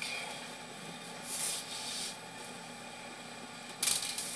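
Sewer inspection camera's push cable being drawn back through the drain line, a steady hiss with two short rushes of rubbing, scraping noise, one about a second in and one at the end.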